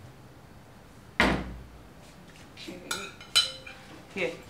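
Tableware being handled and set down on a dining table during serving: one sharp knock about a second in, then two ringing clinks of dish or serving spoon near the end.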